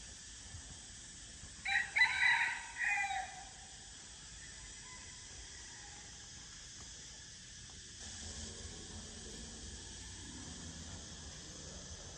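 A rooster crows once, a call lasting about a second and a half, over a faint steady hiss of outdoor background.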